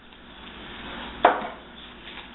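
Wooden spoon stirring tomato sauce into ground meat in a skillet: soft scraping, with one sharp knock just over a second in.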